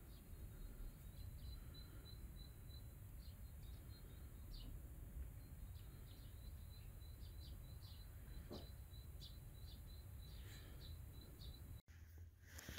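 Faint background noise with a low rumble, and a steady run of short, high chirps repeating about four or five times a second, with a few soft clicks.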